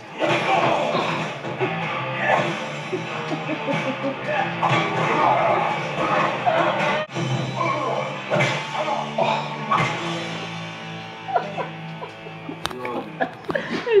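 Film soundtrack music playing from a television in the room, with some speech mixed in.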